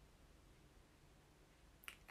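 Near silence: room tone with a faint low hum, and one brief click near the end.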